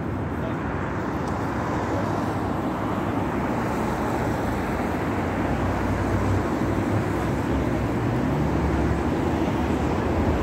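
City road traffic: cars passing with a steady hum of engines and tyres, growing a little louder in the second half.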